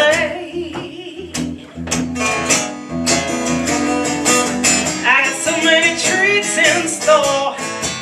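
Live acoustic guitar strummed in a steady rhythm, with a woman's singing voice coming in over it in the second half.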